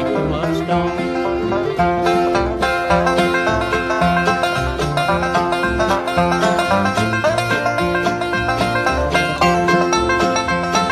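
Bluegrass band playing an instrumental break with no singing: a five-string banjo picks a steady stream of rolling notes over acoustic guitar rhythm with alternating bass notes.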